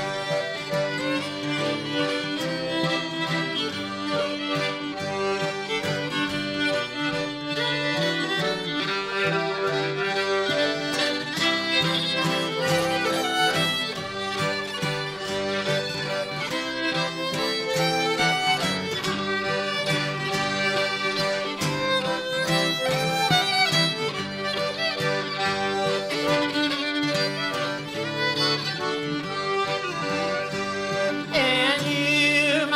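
A live folk trio playing an instrumental passage with no singing. The fiddle is prominent, with an acoustic guitar strumming and a piano accordion, at a steady level throughout.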